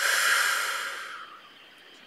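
A woman breathing out long and hard in a rush of air that starts suddenly and fades away over about a second and a half.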